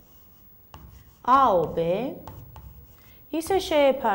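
Chalk scratching and tapping on a chalkboard as letters are written, in faint short strokes. A woman's voice speaks loudly over it twice, about a second in and again near the end.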